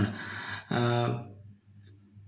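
A man's drawn-out hesitation sound 'aa' about a second in, followed by a short pause, over a thin, steady, high-pitched trill that runs throughout.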